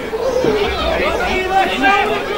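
Indistinct chatter of several people talking near the microphone, with overlapping voices and no clear words.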